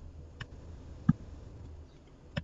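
Computer mouse clicks: a faint click about half a second in and a sharper one about a second in, over a low steady hum.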